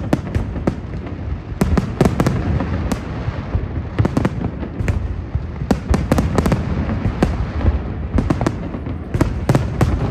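Aerial fireworks display: shells bursting in a dense barrage, with sharp bangs and crackles several times a second over a continuous low rumble.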